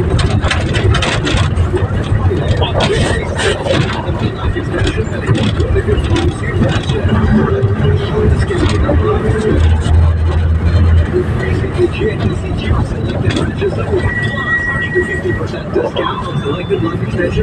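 Engine and road noise from a moving road vehicle, heard from inside, with people's voices over it. A short steady high tone sounds for about a second near the end.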